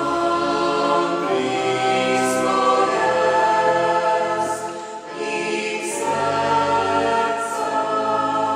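Small mixed church choir of men's and women's voices singing a Christmas song in sustained chords, with a short break between phrases about five seconds in.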